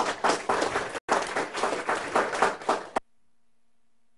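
Audience applauding, many hands clapping, with a brief break about a second in. The applause cuts off abruptly about three seconds in, leaving a faint steady low hum.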